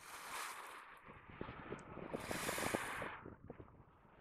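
Faint lakeshore wind and water wash, swelling softly twice, with light crackles of wind on the microphone.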